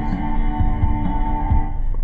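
Guitar chord ringing out steadily, with a few soft low thumps about half a second apart.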